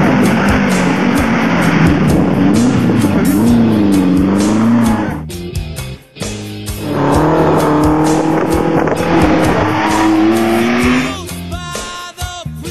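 Historic rally car engine revving hard on a tarmac stage, with tyre squeal. The engine drops away sharply just before halfway as the car takes a tight bend, then climbs again under acceleration and fades near the end.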